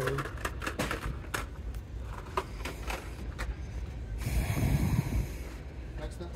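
Scattered clicks and clacks of blister-packed die-cast toy cars being handled on metal store pegs and in a cardboard box. About four seconds in comes a rough rustling noise with a low rumble for about a second and a half.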